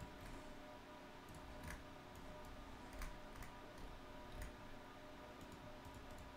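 Faint, scattered computer mouse clicks, about half a dozen spread over a few seconds, over a low steady room hum.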